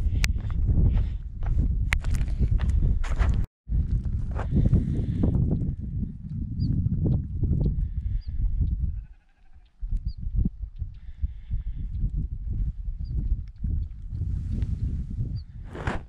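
Wind buffeting the microphone in uneven gusts, with brief animal calls twice around the middle. The sound cuts out for a moment a few seconds in.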